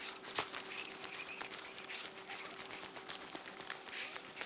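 Faint outdoor quiet with a few faint bird calls and scattered light clicks, under a faint steady hum.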